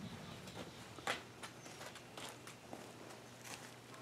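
Soft, irregular footsteps on a floor, with a faint steady low hum beneath.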